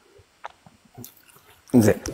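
Mostly quiet with a few faint clicks, then a man speaks a word loudly near the end.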